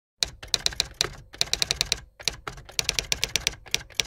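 Typewriter sound effect: quick runs of sharp key strikes, several a second, broken by short pauses, as title text is typed out.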